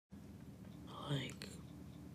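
Faint steady room tone with one brief, soft vocal sound about a second in.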